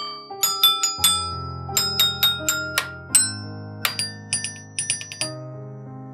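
Fisher-Price alligator toy xylophone's metal bars struck with a plastic mallet, about fifteen ringing, bell-like notes played as a short melody, with a brief pause in the middle and the last note about five seconds in.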